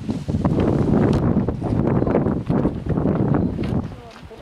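Wind buffeting the camera microphone in uneven gusts, with a few sharp knocks and rustles from the handheld camera on the move.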